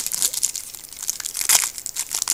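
Foil Pokémon booster pack wrapper crinkling as it is handled, a quick run of dry crackles with sharper ones at the start and about a second and a half in.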